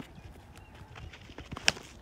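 A cricket bat striking a weighted tennis ball once, a single sharp crack near the end, over faint outdoor background.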